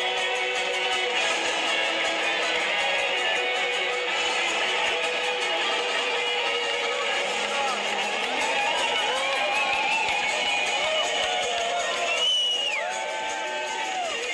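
Live heavy metal band playing, recorded on a phone from the crowd, with electric guitar lines full of bent notes over the band; the sound is thin, with almost no bass. Near the end a high held note drops away.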